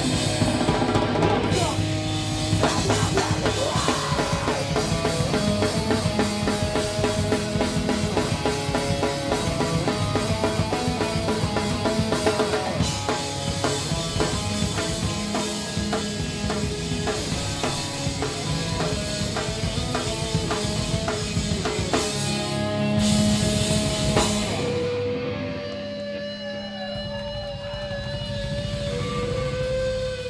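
A live heavy rock band playing loud: distorted electric guitar, bass and a pounding drum kit. Near the end the full band drops out, leaving a single guitar tone held and wavering.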